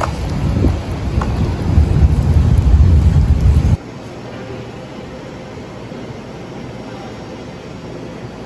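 Wind buffeting a phone microphone outdoors: a loud, uneven low rumble. It cuts off suddenly almost four seconds in, leaving a quieter steady hiss of room tone.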